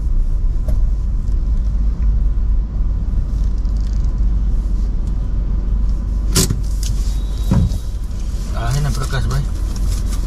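Steady low rumble of a car's engine and road noise heard inside the cabin, with a sharp click about six seconds in and a fainter one a second later.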